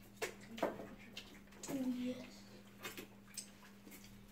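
Mouth and eating sounds of people eating with their hands: scattered short clicks and smacks, with a brief low hummed 'mm' about two seconds in, over a faint steady hum.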